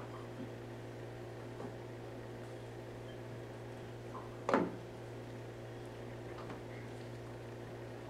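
Faint handling of a wet paper towel being soaked in a bowl of baking-soda solution, with one short knock about four and a half seconds in, over a steady low hum.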